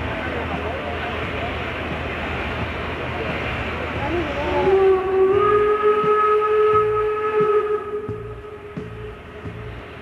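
Escatron 2-4-2 steam locomotive hissing steam from its open cylinder drain cocks, then its whistle sounding about four and a half seconds in, sliding up to one steady note held for about three seconds before fading.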